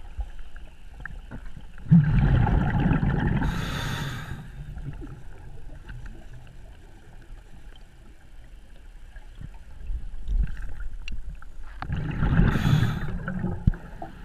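Scuba diver's regulator breathing underwater: two exhalations of bubbles rumbling and gurgling, about two seconds in and again near the end, each with a short hiss, with a quieter stretch between them.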